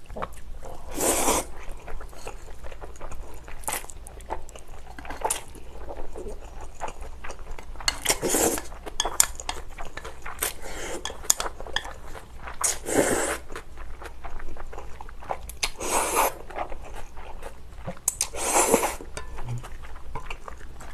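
Someone eating spicy bibim noodles (thin wheat noodles mixed with glass noodles): five short loud slurps of noodles, with chewing and the light clicks of chopsticks against bowls in between.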